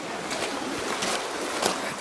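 Steady rushing noise like flowing water, with a few faint crunches that fit footsteps on gravel.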